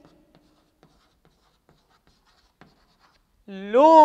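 Chalk writing on a chalkboard: faint, scattered short taps and scratches as a line of a formula is written, then a man's voice starts near the end.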